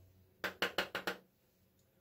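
Makeup brush tapped against the bronzer compact about six times in quick succession, knocking excess powder off the bristles.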